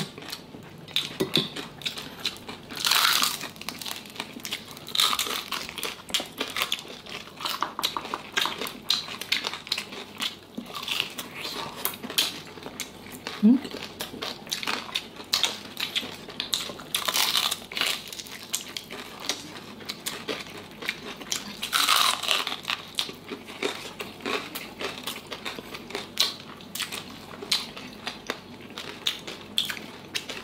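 Crispy deep-fried pork knuckle (crispy pata) crackling and crunching as the skin is torn apart by hand and chewed: a steady run of sharp crackles, with louder bursts of crunching about three seconds in, again past the halfway mark and around two-thirds of the way through.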